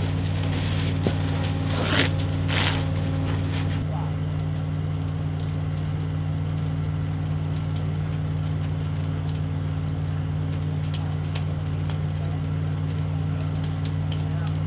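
A hose stream spraying into a burning barn with a few sharp cracks, over a steady low engine drone. After about four seconds the spray hiss thins out and the drone carries on alone.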